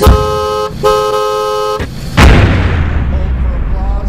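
Closing hits of a pop song played on stage: two held, horn-like chords, one after the other, then about two seconds in a single deep boom that rings out into a long, fading low rumble.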